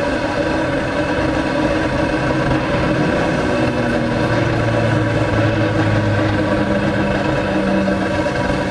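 The Joe pipe heater rig running steadily, its flame pushing hot exhaust out through the pipe: a continuous roar with several steady humming tones. A deeper hum comes in about three seconds in and dies away near seven seconds.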